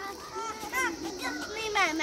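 Young girls' voices chattering and calling out as they play, with a louder call near the end.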